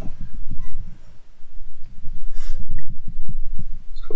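Irregular dull, low thumps and rumble from handling a motorcycle fork in a bench vise while its heated inner tube is unscrewed from the fork foot, with a brief scrape about two and a half seconds in.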